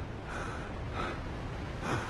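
A man's voice breathing hard in short, ragged gasps, about three breaths over two seconds, over a low steady background rumble.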